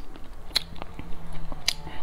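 Chewing of a low-fat whole-grain bread roll topped with oats, with a couple of sharp clicks about half a second in and again near the end.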